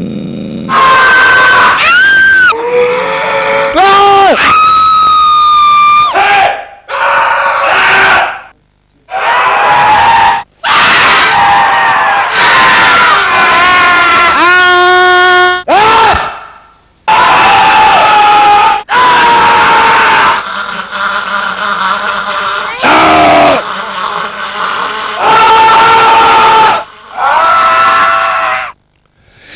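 A rapid series of people, mostly men, screaming very loudly into a handheld microphone one after another. Each scream lasts a few seconds and is cut off abruptly before the next begins, and several rise and fall in pitch like a shriek.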